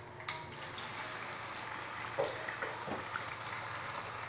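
A urinal flush valve on an American Standard Washbrook urinal is pushed with a sharp click about a quarter second in. Water then rushes steadily through the valve into the bowl, with a couple of brief knocks partway through.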